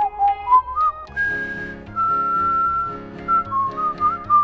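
Someone whistling a tune in clear, pure notes that step upward over the first second and then hold a long note, over light backing music.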